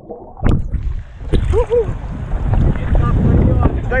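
Muffled water sloshing and churning against a camera's microphone as it is held under the sea surface, with a sharp knock about half a second in and a dull rumble of moving water. A short voice is heard faintly about a second and a half in, and a spoken word right at the end.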